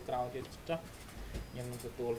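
A person's voice talking in short phrases through a video-call connection, over a steady low hum.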